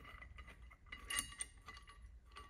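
Faint metallic clicking and clinking as the threaded pin of a roller-pin puller is turned by hand into a roller pin in a Can-Am secondary clutch, with a short cluster of clicks about a second in.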